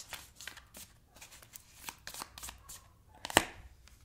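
A deck of tarot cards being handled and shuffled: soft, scattered card clicks and rustles, with one sharp snap near the end.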